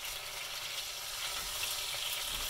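Chicken pieces frying in a pan, a steady sizzle.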